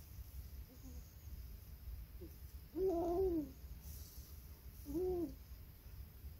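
A person humming short closed-mouth "mm" sounds: two clear hums about three and five seconds in, the first the longer, with fainter ones before, over a low steady room rumble.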